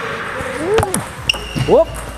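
Table tennis serve: sharp clicks of the bat striking a celluloid/plastic ball and the ball bouncing on the table, a few quick taps about a second in.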